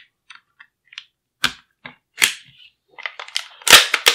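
A series of light metal clicks and snaps as the rear end cap of an HK SP5 pistol is pushed onto the receiver and seated during reassembly, ending in a sharp, loud snap near the end.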